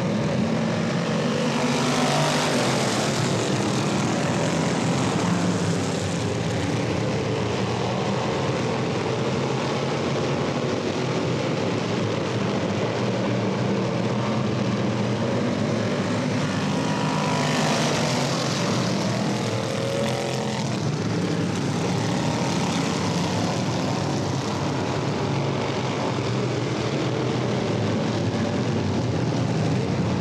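A pack of classic-bodied dirt-track race cars running together at pace-lap speed before the green flag, a steady engine drone that swells as the field passes, about two seconds in and again around eighteen seconds in.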